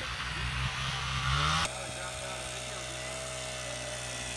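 Honda three-wheeler's engine running in the distance, its pitch rising as it revs. About a second and a half in, the sound cuts abruptly to a small engine idling steadily.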